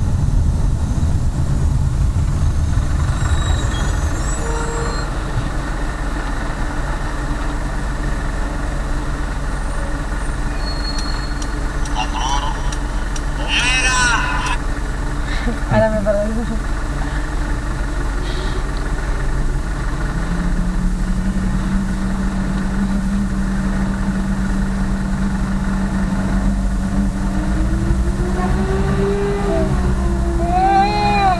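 Steady low engine and road rumble heard inside a taxi's cabin, with short bursts of voice about halfway through. A steady low hum joins in about two-thirds of the way in.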